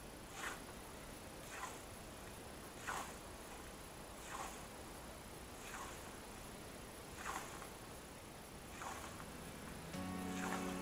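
Hand scythe cutting tall grass: seven faint swishes, one per stroke, at an even pace of about one every second and a half.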